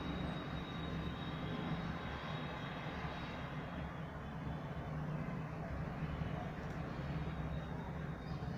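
Steady outdoor background rumble with a low hum and no distinct events, the kind of mixed city noise of traffic and distant engines.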